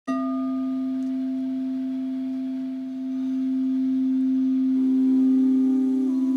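A sustained ringing tone that starts suddenly and holds steady with a few higher overtones, swelling slightly midway; a second, higher tone joins near the end.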